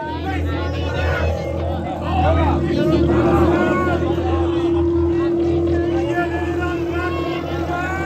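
A steady low amplified drone from the band's instruments on stage, a held note ringing through the amps, under loud crowd chatter.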